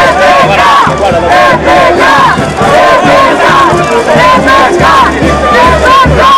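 Large crowd chanting and shouting loudly, many voices in short repeated calls, with music underneath.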